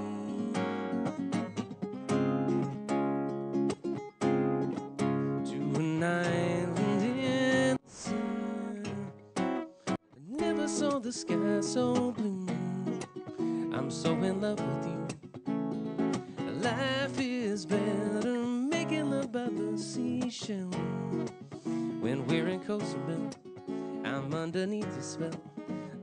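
Strummed acoustic guitar with a man singing a light, upbeat song, with brief breaks about eight and ten seconds in.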